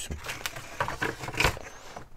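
Several clicks and knocks from an aluminium wall-mount bike holder being handled, the loudest about one and a half seconds in.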